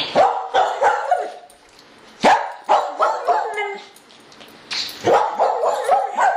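A dog barking in three bursts of several quick barks each, the bursts about two seconds apart.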